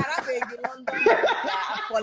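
Several people laughing and chuckling while talking over one another on a live video call.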